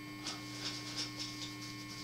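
Steady low electrical hum of a small room recording, with a few faint, short clicks and ticks scattered through it.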